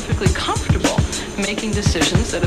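Instrumental hip-hop beat with punchy drum hits and a deep kick that drops in pitch, with short turntable scratches cut over it.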